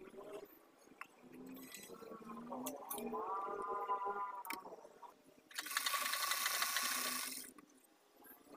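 Electric sewing machine running for about two seconds in the second half, a fast, even clatter of stitching that starts and stops abruptly.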